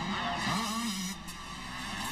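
A 125cc two-stroke motocross bike engine revving hard as it passes close by, its pitch rising and falling.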